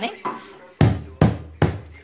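Three sharp knocks in an even beat, about 0.4 s apart, in the second half, after a quieter gap.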